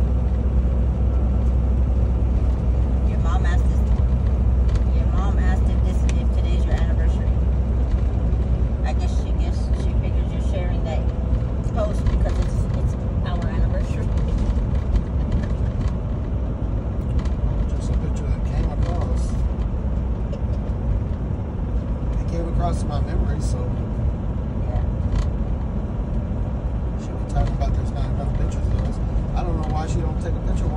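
Steady low rumble of engine and road noise heard inside a truck cab at highway speed, with indistinct voices faintly over it.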